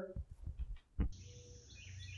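A single sharp click about a second in, then birds chirping in short repeated calls over a faint steady low hum.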